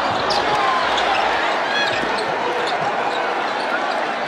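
Basketball arena game sound: a steady crowd din with a ball being dribbled on the hardwood court, and a few short high sneaker squeaks.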